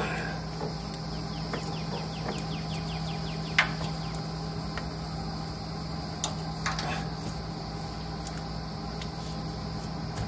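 Steady outdoor background of insects buzzing and a low steady hum, with a few short clicks and taps as a spin-on fuel filter is turned onto its head by hand; the sharpest click comes about three and a half seconds in.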